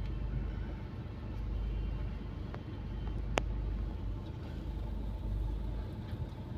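Low, steady rumble of a car's engine and body heard inside the cabin, with a single sharp click a little over three seconds in.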